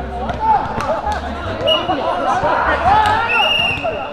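Many players' voices calling and shouting over one another across an outdoor jokgu field, with thuds of the ball being kicked and bouncing. A short high steady tone sounds near the middle and a longer one, about half a second, near the end.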